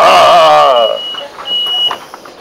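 A man's loud, drawn-out vocal cry with wavering pitch for about the first second. Over it, a bus's electronic beeper sounds two steady high-pitched beeps, the first longer than the second.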